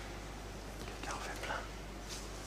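A faint whispered voice, in short low murmurs about a second in, over a steady low electrical hum.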